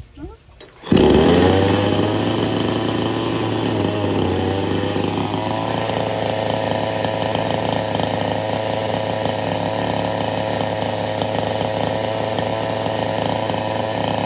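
Bilt Hard two-stroke gas chainsaw engine starting about a second in, its pitch shifting and settling over the next few seconds, then running at a steady note.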